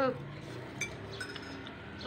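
Metal spoons and forks clinking lightly against ceramic bowls of noodles while eating, a few scattered small clinks.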